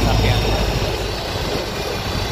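Flatbed tow truck's engine running, a steady low drone heard from inside the cab.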